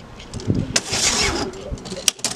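Metal-framed sliding panel of a pigeon-loft nest box being pushed along its track: a low rumble, then a scraping hiss about a second in.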